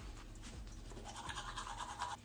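Manual toothbrush scrubbing teeth: quick, scratchy bristle strokes against the teeth. A steady higher-pitched tone joins over the second half.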